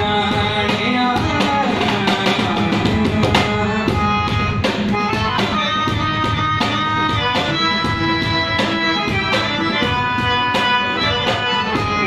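Harmonium holding sustained chords over a cajon beat, an instrumental passage of a live song accompaniment.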